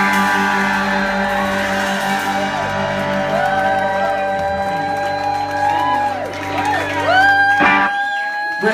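A live rock band's closing chord ringing out on guitars, held and slowly dying, with shouts and whoops from the audience over it. A sharp click sounds near the end.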